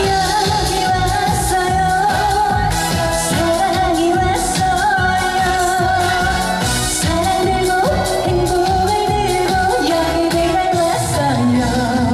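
A woman singing a Korean pop song live into a microphone over a backing track with a steady beat, amplified through stage speakers.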